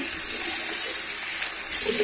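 Tap water running into and splashing in a ceramic bowl held under the faucet, a steady rushing hiss, as dish detergent is rinsed off the bowl.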